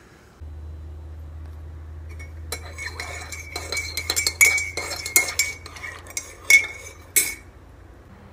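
A spoon stirring coffee in a ceramic mug, clinking again and again against the sides with a ringing note. The clinks begin a couple of seconds in and stop shortly before the end, over a steady low hum.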